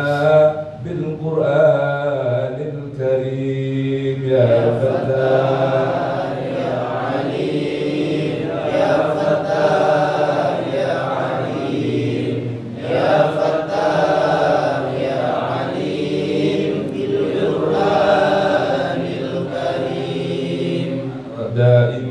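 Men chanting an Arabic devotional prayer (a sung supplication invoking the Prophet and the Quran), in long drawn-out phrases with short breaks between them.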